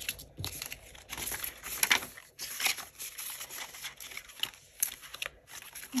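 Frosted plastic cash envelopes and a paper tracker card crinkling and rustling as they are handled and flipped in an A6 ring binder, in irregular short rustles.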